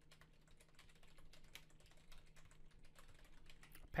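Faint, quick keystrokes on a computer keyboard, a steady run of typing with irregular spacing between the clicks.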